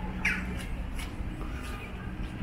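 A bird's single short, harsh squawk about a quarter of a second in, sliding in pitch, with a steady low rumble beneath.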